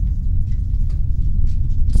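A steady low rumble with no speech over it, and a couple of faint clicks near the end.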